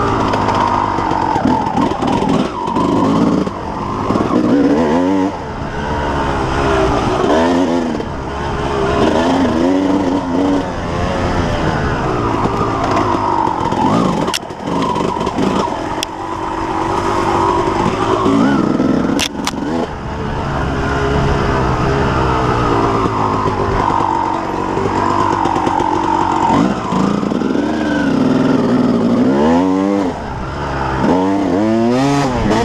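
Yamaha YZ250 two-stroke dirt bike engine ridden hard, its pitch climbing and dropping again and again with the throttle and gear changes. A few sharp knocks come about halfway through.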